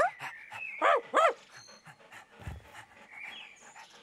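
Cartoon dog vocalising: short voiced barks and yips right at the start and again about a second in, with smaller calls in between. A low thud comes about halfway through.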